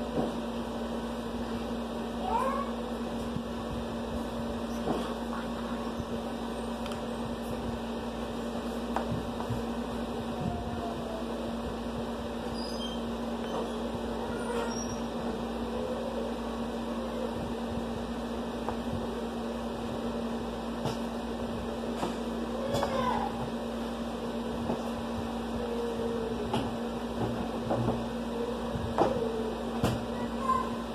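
A few short rising calls, like a cat's meows, over a steady low hum, with faint clicks and taps in between.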